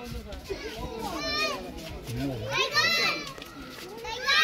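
High-pitched children's voices calling out, one call about a second in and a louder one near three seconds, over background chatter.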